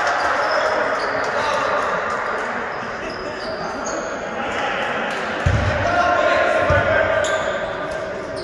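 A basketball bouncing on the court, two bounces in the second half, over a background of voices in the hall.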